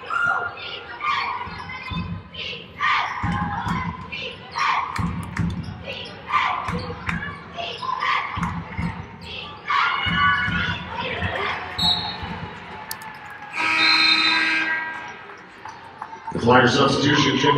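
A basketball being dribbled on a hardwood court, thudding roughly once a second, among scattered players' shouts in a large hall. Near the end a louder held sound lasts about two seconds.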